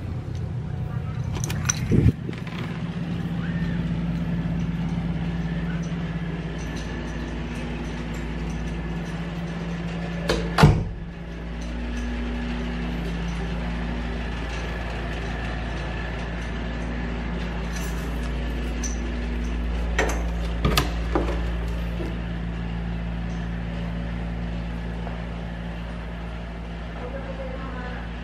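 A steady low mechanical hum with a few sharp knocks over it, the loudest about ten seconds in and two close together near the twenty-second mark.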